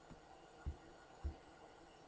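Near silence broken by two faint, short, low thumps about half a second apart.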